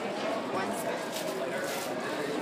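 Indistinct background chatter of voices in a shop, with no distinct event.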